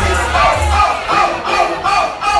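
Loud party music with a heavy bass, with a group of voices shouting along over it.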